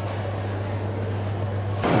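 Shop room tone: a steady low hum under a faint even hiss, the hum cutting off just before the end.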